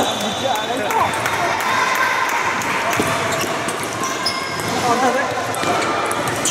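Table tennis balls clicking sharply and irregularly on tables and bats, mixed with indistinct chatter of people talking in the hall.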